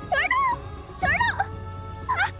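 A girl's high-pitched cries, two short wailing calls that rise and fall in pitch, over steady background music.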